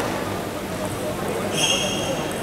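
Indoor sports-hall background during a pause in a table tennis match: a steady murmur of distant voices, with a brief high squeak for about half a second near the end.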